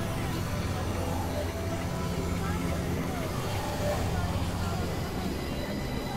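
Experimental electronic drone and noise music: a steady low hum under layered sustained synthesizer tones, with small warbling pitch glides drifting through the middle.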